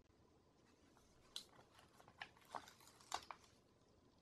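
Faint crackles and small clicks, about half a dozen, from a paper sticker being peeled off its backing sheet and handled over the planner page. The loudest clicks come about a second and a half in and again after three seconds.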